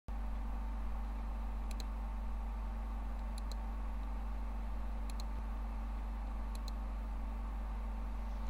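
Steady low electrical hum with a faint hiss behind it. Four faint double clicks come about every second and a half.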